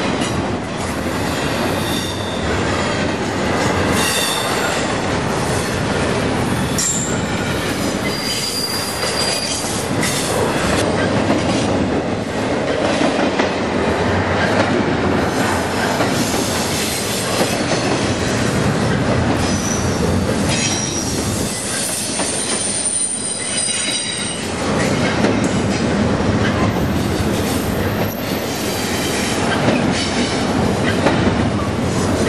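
A freight train of double-stack container well cars rolls past close by in a steady, loud rumble of steel wheels on rail. Several brief high-pitched squeals from the wheels come and go along the way.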